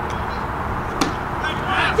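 A single sharp crack of a wooden baseball bat hitting a pitched ball about a second in, followed near the end by voices shouting.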